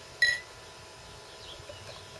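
Beer being poured from a glass bottle into a glass, a faint, steady pour. One short, high-pitched chirp sounds about a quarter second in.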